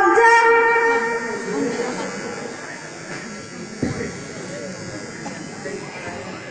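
A person's voice drawing out a long wail held on one pitch, fading away about a second and a half in. Quieter room hubbub follows, with a single thump near the four-second mark.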